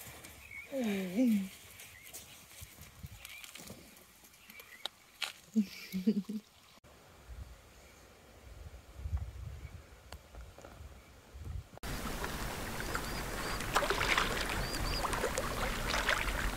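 Two short falling vocal calls a few seconds apart, then from about twelve seconds in a steady wash of shallow sea water with faint high chirps.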